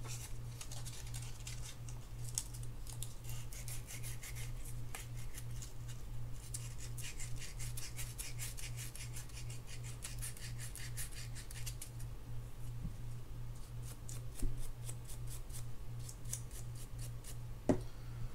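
600-grit sandpaper rubbed quickly back and forth around the metal shaft of a spinning-reel gear, a rapid scratchy rasping with a short pause about two-thirds of the way through. The shaft is being sanded down because it was too tight in its bushing, the cause of the reel's stiff crank.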